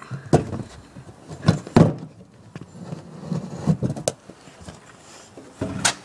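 A string of irregular knocks and thumps, five or so, with low rubbing and rustling between them.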